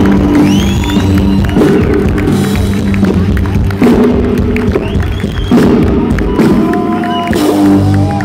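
Live rock band playing loud, sustained guitar and bass chords with drums and cymbal crashes, a closing stretch of a song, while the audience cheers and whistles over it.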